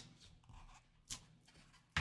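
Faint handling noise as a plastic graded-card slab is lifted out of its foam-lined cardboard box, with one short soft click about a second in.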